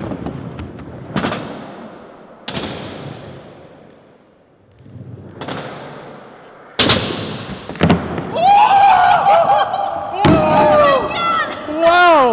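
Skateboard wheels rolling on a concrete floor, with several sharp clacks of the board hitting the ground as a fakie shove-it is tried and landed, the loudest about seven seconds in; each clack echoes in the large hall. From about eight seconds on, people shout and cheer excitedly.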